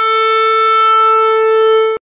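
Intro music ending on one long, steady held note that cuts off suddenly.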